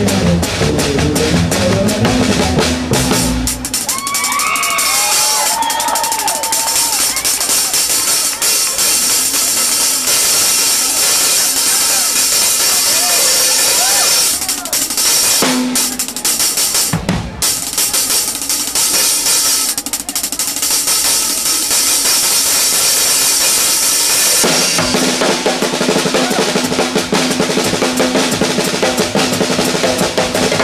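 Swing drum kit solo: fast snare and bass drum strokes under a dense wash of ride and crash cymbals. Deeper, pitched drum tones dominate the first few seconds and return about five seconds before the end.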